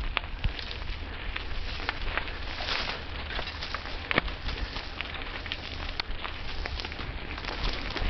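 Mountain bike riding over a rough dirt and stone singletrack: a steady crunch of tyres on loose ground, with frequent short clicks and rattles and scrub brushing past.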